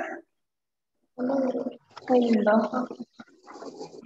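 Speech coming through video-call audio in short, broken stretches, after about a second of complete silence at the start.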